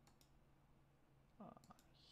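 Faint computer mouse clicks in near silence: two just after the start and two more near the end.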